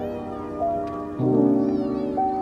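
Soft instrumental background music with gentle keyboard-like notes. Two faint, short, high arching chirps sound over it, one at the start and one near the end.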